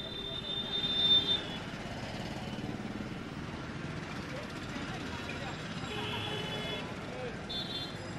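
Open-street ambience from a live outdoor microphone: a steady bed of traffic noise with faint background voices. Brief high-pitched tones come through near the start and again a couple of times later.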